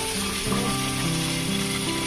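Food sizzling as it fries in a wok over a hot fire, a steady hiss. Background music with sustained notes plays over it.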